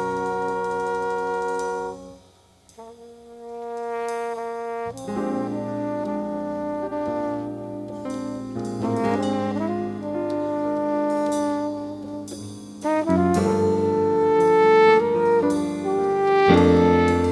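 High school jazz big band playing with long held brass chords. The chord cuts off about two seconds in, leaving one held note. The band re-enters with a flugelhorn lead over the ensemble, and the sound swells fuller and louder near the end.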